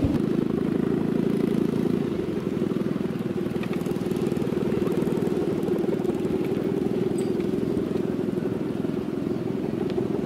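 Steady buzzing drone of a Balinese kite's bow hummer (guwangan), its cord vibrating in strong wind; it eases slightly about two seconds in.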